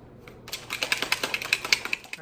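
A shaker bottle of pre-workout drink shaken hard, its contents knocking inside in a fast rattle of about nine clacks a second that starts about half a second in.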